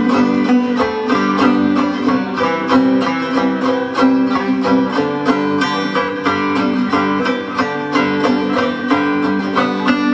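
Five-string zither-banjo picked in a quick, even run of notes, with a second banjo part layered over it.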